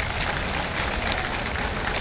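Audience applauding: many hands clapping at once, a dense, steady patter.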